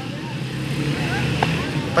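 Faint voices of people in the distance over a steady low rumble, with a brief sharper sound about one and a half seconds in.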